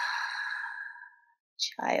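A woman's long, audible exhale through the mouth: a breathy sigh that fades out over about a second and a half. It is a deliberate yoga breath out. Speech resumes near the end.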